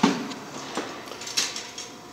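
A sharp knock at the start, then a few faint clinks and taps over low workshop background noise.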